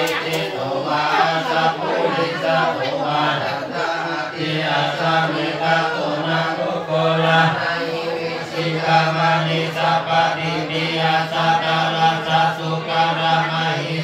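A group of Buddhist monks chanting Pali verses together on one low monotone, without a break, the lead voice amplified through a microphone.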